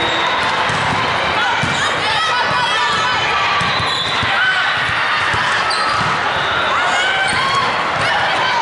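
Busy indoor volleyball hall: a steady wash of players' and spectators' voices from many courts, with athletic shoes squeaking on the hardwood floor and volleyballs being struck and bouncing.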